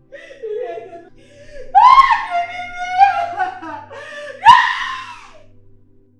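A woman wailing and crying out in grief, with two loud high cries that fall in pitch, about two seconds in and again near the end, between quieter sobbing.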